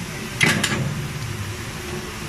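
LF-RSB10B file length cutting machine shearing a steel file blank: two sharp metallic strikes in quick succession about half a second in, over the steady hum of the running machine.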